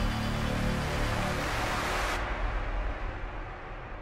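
Cinematic logo-intro sound design: a dense rushing noise over a deep rumble and a few low held tones. The high hiss cuts off about halfway through, and the rest then fades away.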